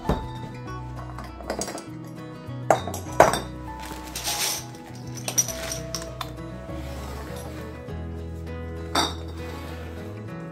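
Glass beer bottles clinking and a metal funnel knocking against bottle necks as the bottles are handled and moved, in scattered sharp clinks, the loudest about three seconds in and another near the end. Background music plays throughout.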